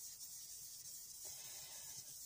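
Faint rubbing of a felt pad on a round alcohol-ink blending tool swept across Yupo paper, spreading ink into a background wash; it gets a little louder about halfway through.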